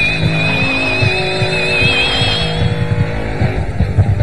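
Instrumental punk-rock track with distorted lead guitar, rhythm guitar, bass and synths, and no vocals. High wavering tones fade out about two and a half seconds in.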